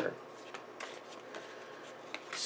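Faint rustling and light ticks of paper sticker sheets being handled and slid across a tabletop.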